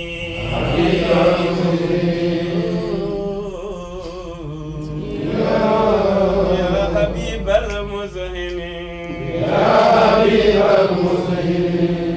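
Men's voices chanting an Arabic devotional poem unaccompanied, in three long swelling phrases with softer stretches between.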